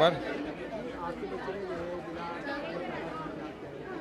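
Background chatter: several people talking at once, fainter than the interview speech, with no single clear voice.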